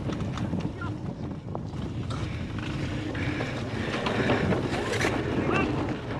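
Wind buffeting a bike-mounted action camera's microphone, over the steady rumble of knobby cyclocross tyres rolling fast across bumpy grass.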